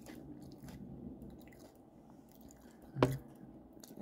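Quiet chewing of a mouthful of corn flakes in milk, with faint crunching and small mouth clicks, and one sharp click about three seconds in.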